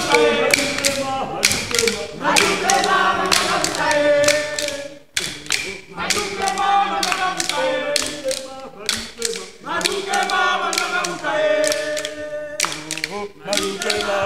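A group of voices chanting together in unison over a rhythm of hand-held wooden sticks being struck, with a short break about five seconds in before the chant and clicking start up again.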